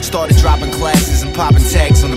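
Hip-hop music: a deep kick drum about twice a second under a rapped vocal.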